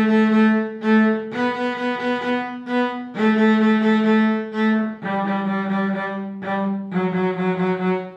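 Solo cello, bowed, playing a slow, simple melody of long held notes with vibrato, an easy piece that also sounds easy.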